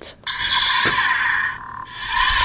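Hasbro Star Wars BladeBuilders Path of the Force toy lightsaber switching on, playing its electronic ignition and blade sound from its built-in speaker in the Sith (dark side) sound font. The sound starts about a quarter second in, holds steady, dips briefly near the end and then picks up again.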